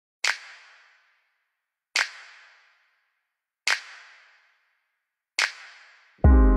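Four sharp percussive hits, evenly spaced about a second and three quarters apart, each ringing out briefly with reverberation.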